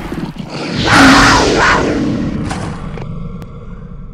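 Produced intro-logo sound effect: a loud swell peaking about a second in, then a few sharp hits, trailing off in a long fading tail.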